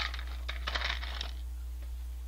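Dry instant ramen noodle block being snapped and crumbled into small pieces by hand: a quick run of crisp cracks and crackles in the first second or so, then a few fainter ones, over a steady low hum.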